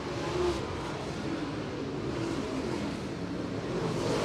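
Dirt late model race cars' V8 engines running at speed as the pack laps the dirt oval, a steady blended engine noise with no single car standing out.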